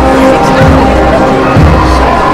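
A brass band playing loudly in long held notes, with a few low thuds underneath.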